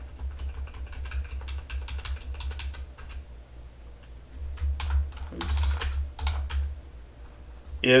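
Computer keyboard being typed on in quick runs of key clicks with short pauses, as a terminal command is entered, over a steady low hum.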